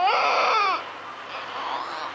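A baby crying: one loud wail that falls in pitch and breaks off after under a second, followed by quieter crying.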